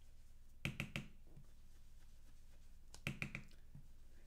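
Quiet taps and clicks of an oval blending brush dabbing dye ink through a plastic stencil onto cardstock, in two short clusters: about half a second in and again about three seconds in.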